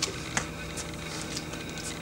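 A handful of light clicks and knocks as resistance-band handles and clips are lifted off wall hooks and handled, the sharpest right at the start, over a steady low room hum.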